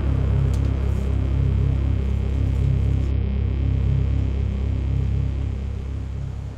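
Low rumbling drone of a horror film score, held steady and fading near the end.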